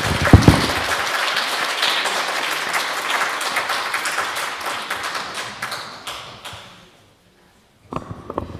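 Audience applauding, fading away about seven seconds in, with a low thump just after the start.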